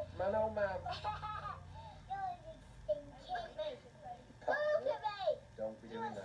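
Young children's voices chattering, too indistinct to make out, played back through a television's speaker, over a low steady hum.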